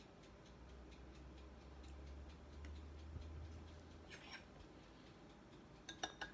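Faint, evenly spaced light ticks of a spoon stirring coffee in a glass mug, with a faint low hum under the first few seconds.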